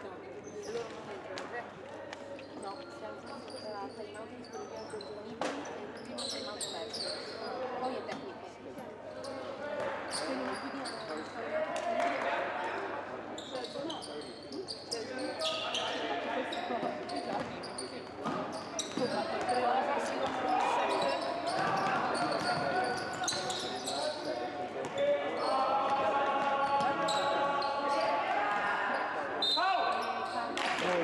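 Sounds of a live youth basketball game in a large, echoing gym: a basketball bouncing on the hardwood court, with players' shouts and voices ringing through the hall. It grows louder in the second half, with a long called-out voice near the end.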